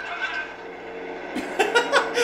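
Two men chuckling and laughing, soft at first and louder from a little before the end, over low steady film soundtrack sound.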